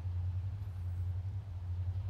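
A steady low hum with no other sound over it.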